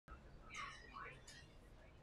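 Near silence with a faint whisper from a person, about half a second to a second and a half in.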